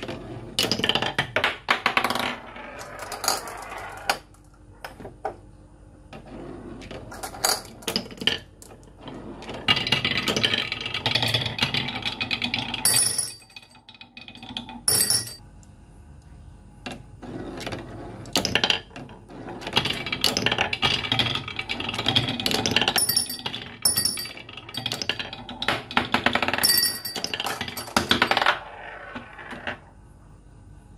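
Glass marbles rolling along a curved wooden marble-run track, in runs of rolling sound broken by frequent clacks and ringing clinks as they hit the wooden pieces and each other, with short quieter pauses between runs.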